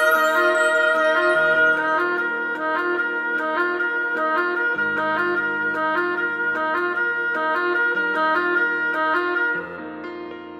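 Oboe playing a melody over an electronic backing track with a repeating keyboard note pattern and a bass line that changes notes every few seconds. The backing drops away and the music gets quieter shortly before the end.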